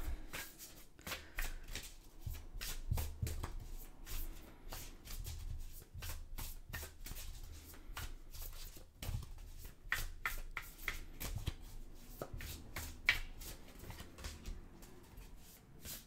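A deck of Thoth tarot cards being shuffled by hand: a steady run of irregular soft card clicks and slides, with a few sharper snaps now and then.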